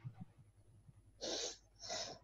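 A person sniffing twice through the nose, two short breathy bursts about half a second apart in the second half.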